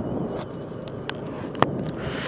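Motorcycle on the move: a steady engine-and-road rush with wind on the microphone, and a few light clicks.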